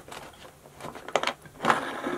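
Hands tightening the twist knob that clamps a dress-form mannequin's height-adjustment pole: a few short scraping, rubbing sounds, the loudest near the end.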